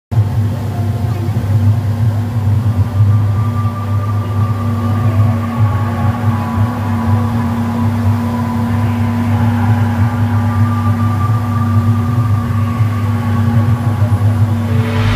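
Mercury outboard motor running steadily at cruising speed, a constant drone with a higher whine above it, over the rushing noise of wind and water from the boat's passage.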